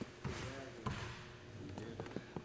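Basketballs bouncing on a hardwood gym floor: a few separate, irregular thumps, with faint voices behind them.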